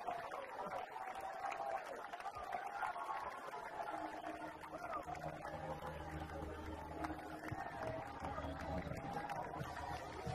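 Many voices of a choir shouting and cheering in praise at once, with no single voice standing out. About four seconds in, a low sustained chord comes in underneath and holds.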